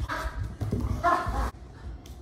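A small dog barking twice, once at the start and again about a second in; the second bark cuts off sharply.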